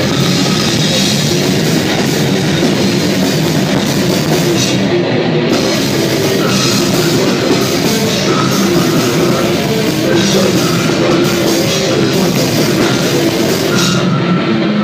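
Brutal death metal band playing live at full volume: fast, dense drumming and distorted guitars in a continuous wall of sound.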